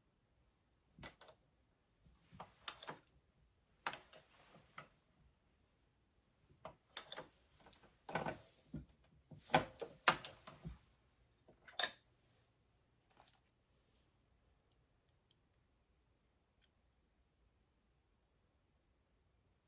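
Irregular clicks and knocks of hands working a Dillon RL550B reloading press. A cartridge is set in the shell plate and the ram is cycled through a Lee Factory Crimp Die for a trial crimp. The loudest knocks come around the middle, and only a few faint ticks follow in the last few seconds.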